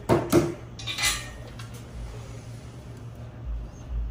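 Metal engine parts clinking and clanking as they are picked out of a parts cart and handled: a loud clank right at the start, another with a ringing tail about a second in, then quieter handling.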